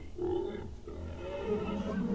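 Low, faint monster growl from a cartoon sea creature in the anime sound track, strongest in the first half second or so.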